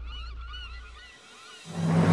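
A flock of birds calling, many short overlapping calls, over a low hum that fades out. Near the end a louder sound with a low tone swells in.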